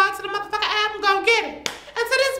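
A man talking in a high-pitched voice, with one sharp hand clap about three-quarters of the way through.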